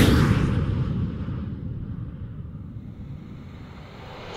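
A deep rumbling boom, loudest at the start and fading away over about four seconds, as in an edited intro sound effect.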